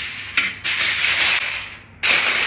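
Aluminium foil crinkling as it is pressed down over a plastic container, with a sharp crackle about half a second in.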